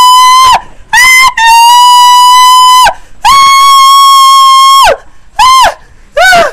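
A woman wailing: a run of loud, high cries, each held steady on one pitch and falling away at its end. There are five cries, two of them about a second and a half long.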